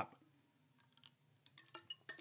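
Near silence while someone drinks from a bottle, then a few faint clicks and clinks near the end as the bottle is handled.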